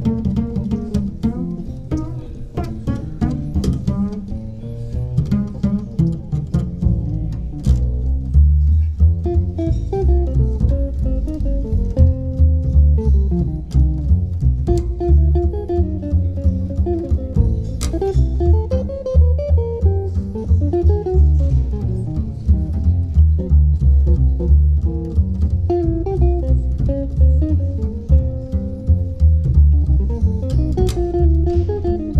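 Upright double bass and guitar playing a blues together, the bass plucked. About seven seconds in, the bass line turns louder and deeper beneath the guitar's melody.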